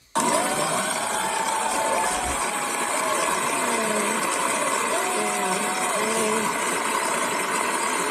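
Voices from a played-back talk-show clip, heard under a steady, even rushing noise that starts abruptly and holds level.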